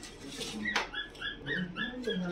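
Newborn Shih Tzu puppies whimpering: short, high-pitched squeaks, one near the middle and then about five in quick succession.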